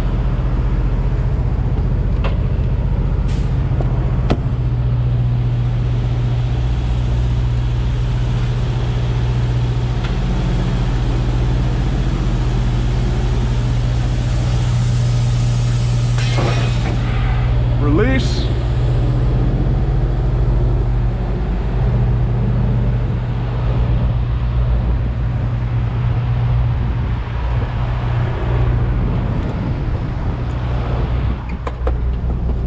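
Semi-truck diesel engine idling steadily with a deep, even hum. A few short knocks come about two to four seconds in, and a hiss and scraping sounds come around sixteen to eighteen seconds in, while the trailer's tandem-release handle is worked.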